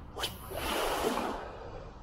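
A lure cast with a light spinning rod: a quick swish of the rod, then a second-long zipping rush of line running off the reel.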